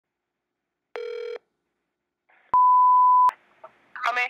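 Telephone line tones: a short buzzy tone about a second in, then a single steady, pure beep lasting under a second that starts and stops with a click, followed by faint phone-line hiss.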